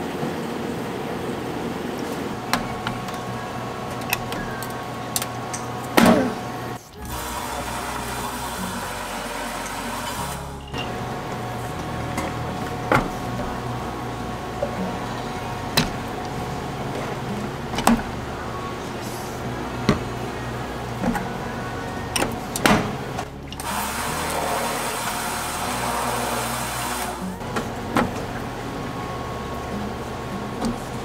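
Soft background music over cafe work sounds: scattered clicks and knocks of cans and cups on the counter, and twice a motorized can-sealing machine running for a few seconds as it seals an aluminium drink can.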